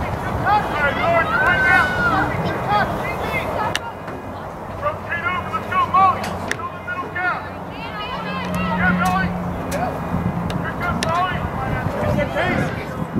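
Voices of players and spectators calling out across a soccer field in short bursts, too far off to make out, over steady outdoor background noise. A few sharp knocks cut through.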